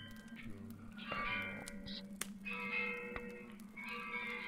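Ambient soundscape music: a steady low drone under clusters of held high tones that come in short phrases, about a second in and again near the three-second mark, with a few sharp clicks in between.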